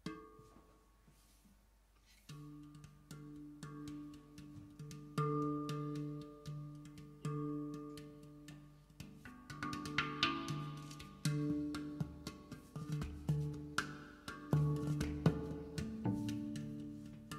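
Handpan played with the hands: single ringing steel notes with sharp attacks, one struck at the start and then a steady run of notes from about two seconds in. In the second half a double bass joins with plucked low notes, and the playing grows fuller.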